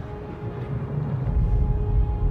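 Film soundtrack with an ominous orchestral score holding a steady note, and a deep low rumble that swells and grows louder from about a second in.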